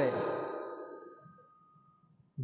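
A man's voice trailing off at the end of a spoken sentence, its last sound fading away over about a second and a half into near silence.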